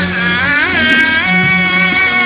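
Javanese gamelan music: a long melodic line slides up and down in pitch over steady, held low notes.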